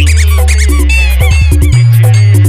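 Indian 'one step long humming bass' DJ remix music: a long held, very loud humming bass note, broken about a second in by a quick run of stuttered bass hits before the held bass returns, with high gliding synth squeaks and melody over it.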